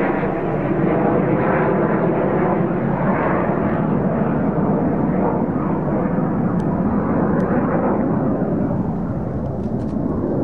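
Military fighter jet engine noise, loud and steady with no rise or fall.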